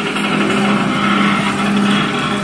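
A loud, steady motor-like hum with a low droning tone.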